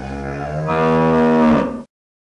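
A cow mooing: one long low moo that swells louder about halfway through and cuts off abruptly just before the end.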